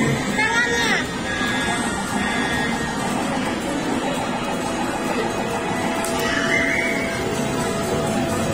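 Arcade din: electronic game-machine music and jingles layered with background voices.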